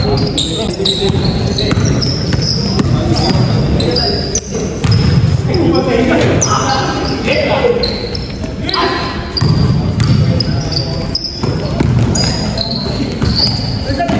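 A basketball bouncing on an indoor court floor during play, with the squeak of sneakers, echoing in a large gym. Players call out and laugh over it.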